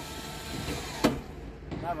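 A steady electric whirr from the BMW E36 as the driver tries it, falling away just under a second in, followed by a sharp click.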